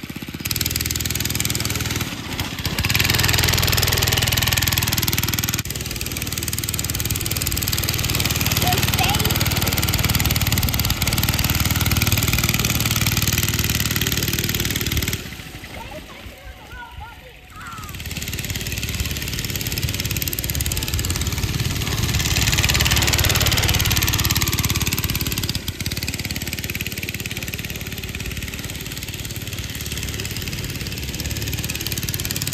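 Homelite Spitfire go-kart's two-stroke engine running as the kart is driven, revving up and easing off. It swells louder a few seconds in and again past the middle, with a short lull about halfway through.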